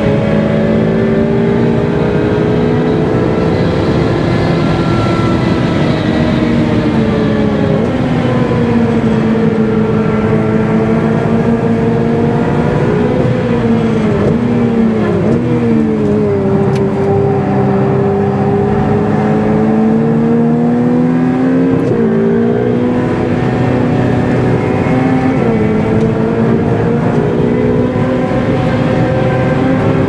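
Ferrari 488 Pista's twin-turbocharged V8 driven hard on track, its pitch rising and falling again and again as the car accelerates, changes gear and brakes. Past the middle there is one long, steady climb in revs lasting several seconds.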